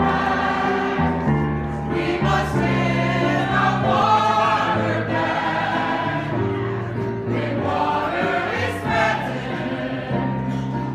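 A choir singing a Motown tune with new lyrics, in steady sustained music.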